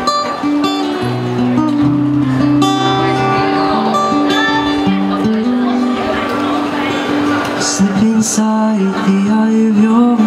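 Acoustic guitar strummed and picked in sustained chords, with a man singing over it from partway through.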